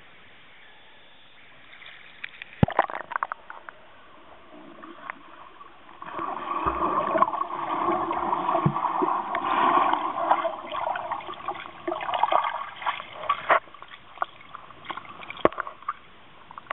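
Muffled underwater sound picked up by a submerged camera, with a stretch of bubbling and gurgling in the middle from a swimmer breathing out underwater, and a few sharp clicks.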